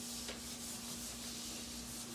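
Felt whiteboard eraser rubbing back and forth over a whiteboard, wiping off marker in a run of quick strokes, over a steady low hum.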